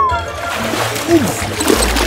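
Background music with a splash sound as the hamster plunges into the plastic ball pit, starting just after a falling whistle-like glide trails off, with short voice-like squeaks over it.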